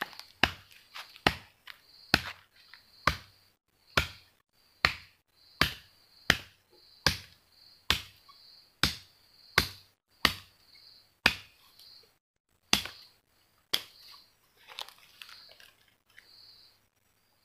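Sharp, rhythmic knocks of wood being struck, about one a second, stopping a couple of seconds before the end. A faint, high insect buzz comes and goes behind them.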